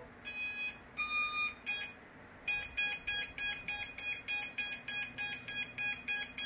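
Electronic beeper on the quadcopter sounding as its flight controller reboots: a few separate high tones in the first two seconds, then a steady run of short high beeps about three a second.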